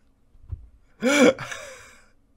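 A man's short, sharp gasp about a second in. The voice rises and then falls in pitch and fades out quickly. A faint low thump comes just before it.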